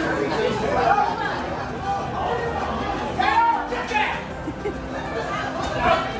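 Several people chatting around the microphone, with music playing in the background.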